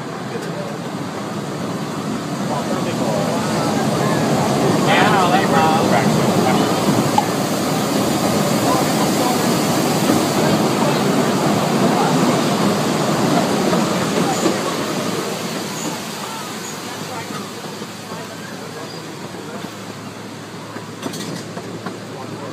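Small amusement-park train running along its track, heard from an open passenger car: a steady rolling noise that builds over the first few seconds, holds, then eases off in the second half. A brief voice is heard about five seconds in.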